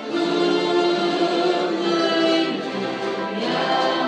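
Church orchestra of strings and brass playing a hymn in held chords, with a choir singing, the chord changing about two and a half seconds in.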